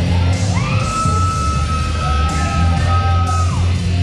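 Live music with a steady bass line, over which a voice rises into a long, high held note for about three seconds, joined near the end by a second, lower held note before both fall away.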